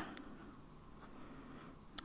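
Fine-tip pen writing strokes on notebook paper, faint, with a short click near the end.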